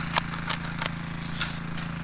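Hand-twisted spice grinder seasoning food: a few scattered crackling clicks as it grinds, over a steady low hum.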